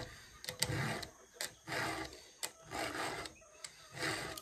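A 7/32-inch round rat-tail file sharpening the cutter teeth of a Stihl chainsaw chain by hand: about four rasping file strokes roughly a second apart, with a few light clicks in between.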